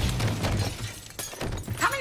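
A loud shattering crash that fades away over about a second, followed by a few scattered clicks; a man starts speaking near the end.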